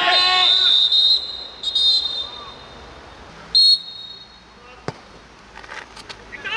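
Referee's whistle blown three times over players' shouts: a blast of about a second, a short one, then a short, loudest blast, stopping play as a player lies down after a challenge. A single sharp knock follows about five seconds in.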